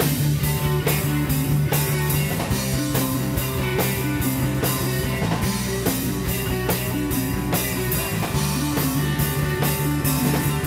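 A rock band playing live: electric guitars and bass guitar over a drum kit, with a steady beat and sustained low bass notes.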